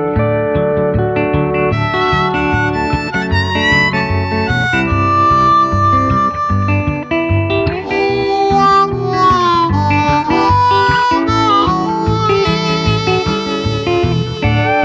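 Instrumental break of a slow country song: a harmonica takes the lead with bending notes over acoustic guitar and bass.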